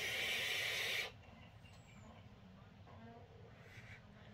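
A vape draw through a Hellvape Fat Rabbit rebuildable tank atomizer, with its airflow fully open: air hisses steadily through the airflow slots and the firing coil, then cuts off abruptly about a second in.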